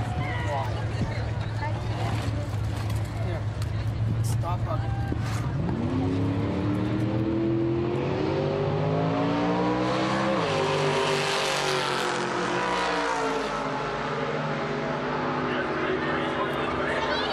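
A drag racing car's engine accelerating down the strip. Its pitch climbs steadily for about five seconds, drops abruptly about ten seconds in, then winds down slowly as the car shuts off. Crowd voices can be heard underneath.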